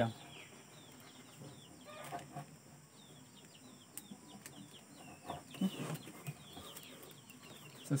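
Birds chirping in the background: many short, falling chirps repeat throughout, with a few lower calls near the middle. Faint clicks and rustles of plastic mesh being handled.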